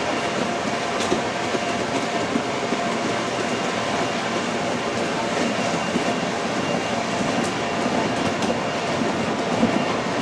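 Steady rumble and whoosh of the blower keeping an inflatable tumbling mat inflated, with a faint steady hum and a few light thuds of children landing.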